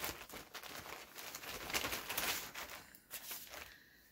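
Soft rustling and crinkling as a stack of pieced quilt blocks is handled and sorted through, with small irregular crackles; it pauses briefly about three seconds in and stops just before the end.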